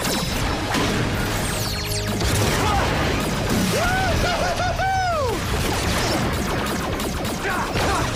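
TV fight-scene sound effects: explosions, crashes and blows in quick succession over background music, with a wavering pitched effect that rises and falls about four to five seconds in.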